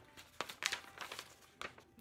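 A sheet of paper rustling and crinkling in several short, irregular bursts as it is picked up and handled.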